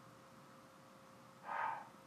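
Quiet room tone with a faint steady hum, then a single soft rushing sound about half a second long, about one and a half seconds in.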